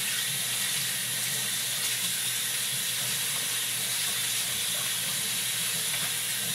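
Bathroom tap running in a steady stream, splashing over a plastic aquarium filter part held under it and into the sink.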